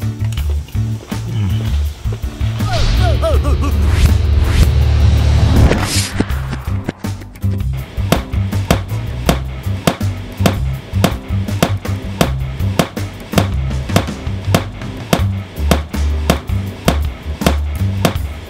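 Background music with a heavy bass line: a build-up rises to a peak about six seconds in, then a steady beat runs on.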